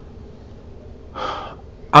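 A man draws one short, sharp breath in, about a second in, with his hand held to his nose and mouth.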